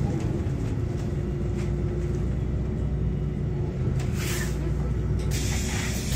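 City bus engine running with a steady low drone, heard from inside the bus. A short hiss of compressed air comes about four seconds in, and a longer one from about five seconds in, as the bus reaches a stop.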